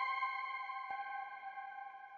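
A bell-like chime sound effect ringing out, several tones held together and fading away steadily, with a faint click about a second in.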